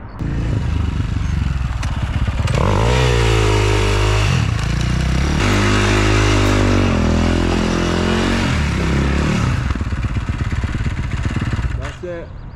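Dirt bike engine revving hard, its pitch climbing and falling several times as the rider throttles on and off, with the rear tyre spinning and scrabbling on dusty concrete.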